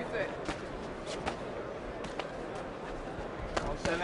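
Boxing arena background of crowd murmur and scattered voices, with about half a dozen sharp slaps of boxing gloves landing on the fighters' bodies during a clinch.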